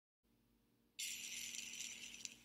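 A high jingling shimmer, a title sound effect, starting suddenly about a second in after silence and holding before it begins to fade.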